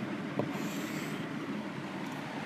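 Chalk on a blackboard: a light tap a little under half a second in, then a short faint scratching stroke, over a steady background noise.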